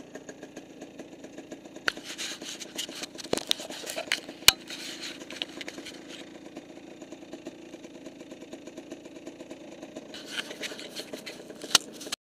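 Dirt bike engine running steadily at low throttle, with sharp knocks and rattling as the bike goes over rough trail, the loudest knock about four and a half seconds in and another just before the end.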